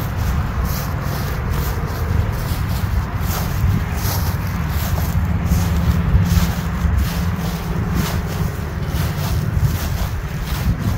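Wind buffeting the phone's microphone in a steady low rumble, with faint rustling and footsteps as the camera is carried.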